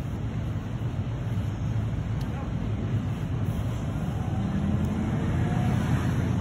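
Steady low rumble of vehicle engines and road traffic.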